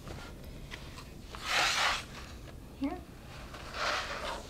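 Waxed linen thread pulled through the punched holes of a paper pamphlet binding: a rasping swish about a second and a half in, with small clicks of needle and paper. Near the end, a softer rustle of the pages as the pamphlet is turned over.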